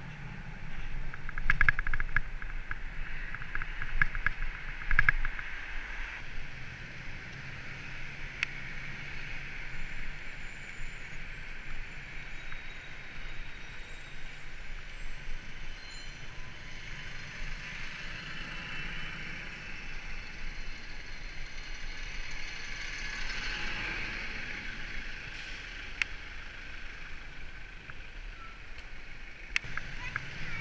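Road and traffic noise heard from a camera on a bicycle riding through city streets: a steady hiss of tyres and passing vehicles, with a run of rattles and knocks in the first few seconds and a passing vehicle swelling up past the middle.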